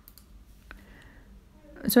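Quiet room tone with a single sharp click a little before halfway through; a voice begins speaking right at the end.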